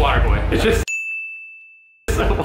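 Voices and background noise cut off abruptly about a second in, giving way to a single bright ding, a bell-like sound effect that rings on one clear pitch and fades away over silence.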